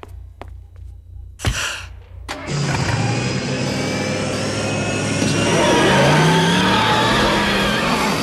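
Cartoon sound effects of the DeLorean time machine starting up. There is a single thump about a second and a half in. From about two and a half seconds a loud engine-like whoosh with wavering, gliding tones begins and grows louder toward the end.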